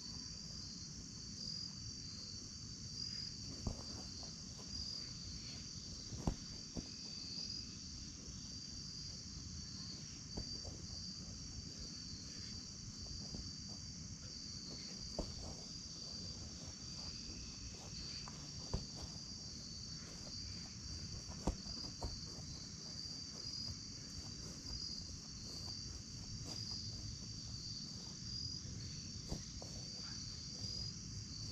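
Steady evening chorus of crickets, an unbroken high trill, over a low rumble. A handful of short, sharp thumps stand out, the soccer ball being kicked.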